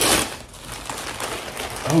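A short rustle of gift-wrapping paper being handled, then faint handling noise; a man says "Oh" near the end.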